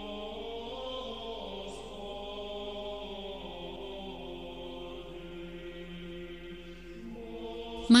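Slow chant sung in long, sustained notes that shift gradually from one pitch to the next, played quietly as background music.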